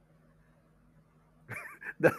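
Near silence, then about one and a half seconds in a brief, high, wavering voice-like sound starts.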